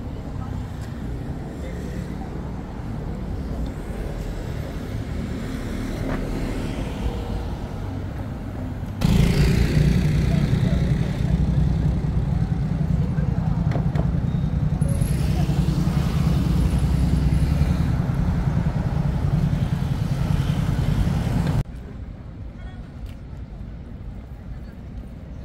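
City street ambience with road traffic and passers-by's voices. From about a third of the way in, a much louder low rumble with hiss takes over for about twelve seconds, then cuts off suddenly.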